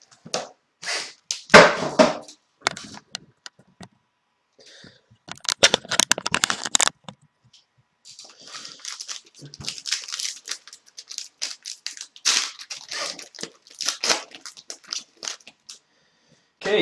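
A box of hockey cards being opened and its card packs handled: plastic and cardboard packaging crinkling and tearing, with a sharp knock about a second and a half in. Later comes a dense burst of rustling, then a long stretch of crinkling as a pack is torn open.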